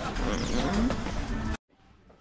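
A steady low rumble with faint voices under it, which stops abruptly about one and a half seconds in at an edit cut. Quiet room tone follows.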